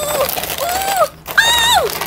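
Gift-wrapping paper being ripped and pulled off a boxed toy set, a continuous crackling rustle. Three short high-pitched vocal exclamations sound over it, the last and loudest about a second and a half in.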